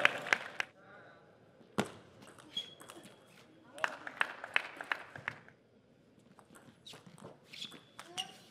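Table tennis ball clicking on the table and bats: a few separate sharp knocks, then a run of quick light clicks in the middle, with a brief high squeak twice.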